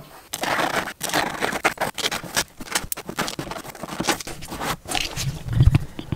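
Knife blade cutting through a dense foam case insert: a run of quick, uneven scraping strokes. A low thump comes near the end.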